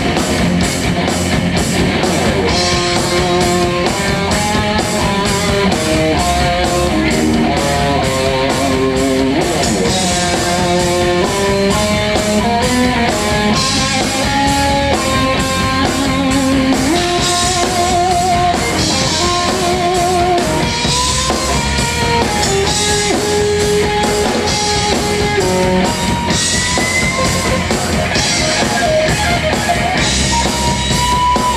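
A heavy metal band playing live through a PA in an instrumental passage: a lead electric guitar solo with held notes and vibrato over distorted rhythm guitar, bass and drum kit with crashing cymbals.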